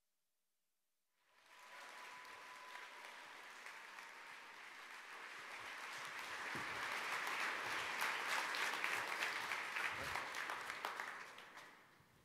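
Seated audience applauding: the clapping starts suddenly about a second in, swells to its loudest in the second half, then dies away near the end.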